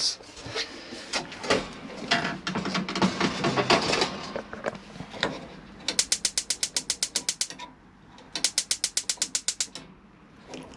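Knocks and clatter of a motorhome cooker being handled, then two runs of rapid, even clicking, about ten clicks a second for a second and a half each, typical of the cooker's electronic spark ignition.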